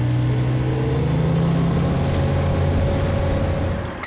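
Motorboat engine running under throttle, its note climbing a little about a second in and then holding steady, over a rush of water and wind.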